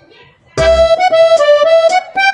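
Background music: a melody of held notes over a steady beat. It dips out briefly at the start and comes back in about half a second later.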